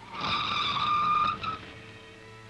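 A 1940s sedan pulling up to the curb with its tyres squealing: one steady high squeal lasting about a second and a half as the car comes to a stop, over a brief low engine rumble at the start.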